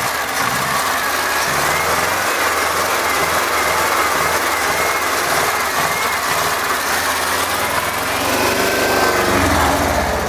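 A 1975 LuAZ off-roader's air-cooled V4 engine idling steadily with its cooling fan running, heard up close in the engine bay.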